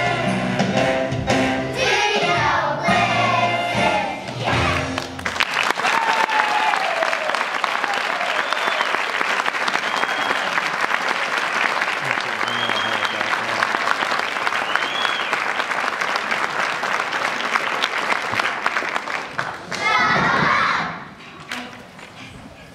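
A children's choir holds the last notes of a song for about five seconds, then the audience breaks into applause with a few cheers that runs on for about fifteen seconds. A voice rises briefly near the end as the clapping dies down.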